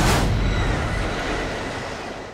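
Subway train rushing past: a steady rumbling rush that swells suddenly at the start and fades gradually.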